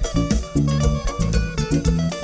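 A live band playing Latin dance music through loudspeakers: an electric guitar melody over a steady bass line, with regular percussion hits keeping the beat.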